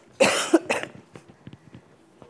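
A person coughing: one loud cough followed by a shorter second one, then a few faint clicks.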